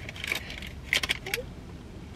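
Crackling and crinkling as a flaky pastry crust breaks and a paper bag is handled, with a cluster of sharp crackles about a second in.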